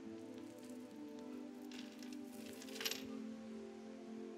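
Soft instrumental music of held keyboard chords, with a brief clink about three seconds in.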